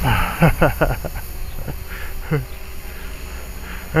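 A man chuckling in a few quick breathy strokes that fall in pitch during the first second, with one more short falling sound a little past the middle, over a steady low rumble of wind on the microphone.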